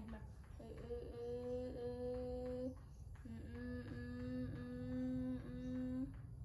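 A woman humming two long, steady notes at one pitch, each about two seconds long, with a short break between them.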